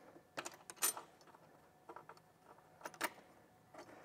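Faint, scattered metallic clicks and clinks of a hand tool and bolt hardware being handled and fitted, with a few strokes clustered about half a second in and another pair near three seconds in.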